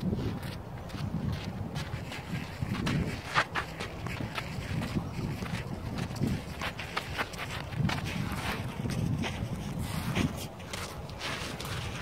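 Wind noise on the microphone with scattered short knocks and scuffs from a player moving, lunging and dropping onto a clay tennis court.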